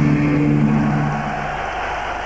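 The band's final held chord, distorted guitars and bass, ringing out and dying away about a second and a half in. It leaves the steady noisy roar of the arena crowd.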